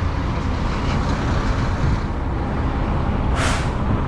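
Semi-truck diesel engine idling steadily, with a short burst of air hiss about three and a half seconds in.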